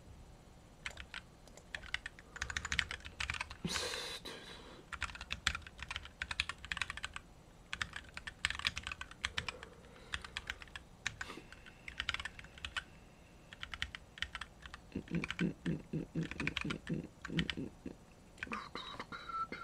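Typing on a computer keyboard in irregular bursts of keystrokes, ending in a quick even run of heavier key presses, about five a second, in the last three seconds.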